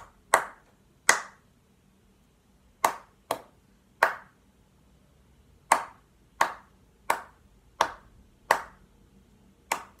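One person clapping out the rhythm of a melody line with her hands: about eleven sharp claps in an uneven pattern, some in quick pairs and others spaced about a beat apart.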